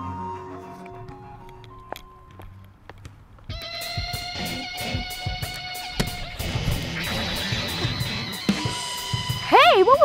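Background music: soft held notes at first, then a sustained tone with a quick, even ticking beat that comes in about three and a half seconds in.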